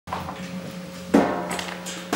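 A diddley bow, a one-string board instrument, being picked up and handled: one sharp knock about a second in with a brief ring after it, then a smaller click, over a steady low hum.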